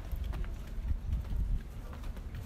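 Footsteps on the planks of a wooden footbridge: a few faint knocks over a steady low rumble.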